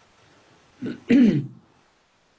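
A man clearing his throat once, about a second in.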